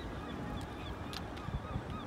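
Birds calling in the background, several short faint calls over a steady low rumble, with a couple of small clicks.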